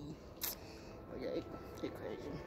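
Handling noise on a hand-held phone: a single sharp click about half a second in. Faint indistinct voices are heard behind it.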